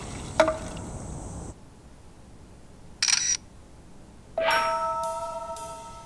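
Cartoon sound effects. A short knock rings briefly just after the start over a faint hiss. About three seconds in comes a phone-camera shutter click, and about a second later a bell-like chime rings on with light ticks.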